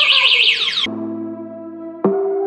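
A fast-warbling, alarm-like electronic tone with voices under it stops abruptly about a second in, and calm, steady synthesizer music takes over.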